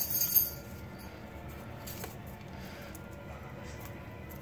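Faint television audio playing in the background, mostly music with faint steady tones. It opens with a brief high ringing sound in the first half second.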